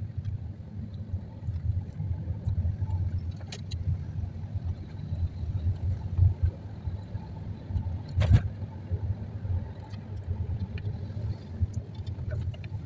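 Road and engine noise heard from inside a car driving through city streets: a steady low rumble, with one sharp knock a little over eight seconds in.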